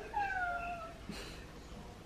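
A grey domestic cat meowing once: a single meow under a second long that falls in pitch, asking to be let into the room.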